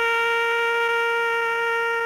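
A solo brass instrument holds one long, steady note.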